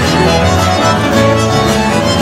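Paraguayan folk music from a string ensemble, with a violin carrying the melody over strummed accompaniment. It is an instrumental passage with no singing.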